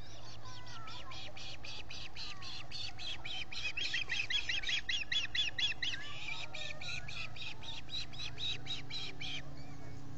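Ospreys calling: a fast, even series of high chirps, about five a second, that grows louder in the middle and stops shortly before the end.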